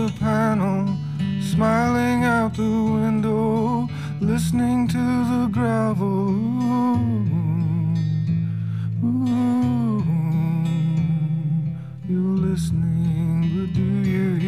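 Acoustic guitar playing sustained chords while a man sings wordless phrases over it, several drawn-out notes with a waver in the pitch.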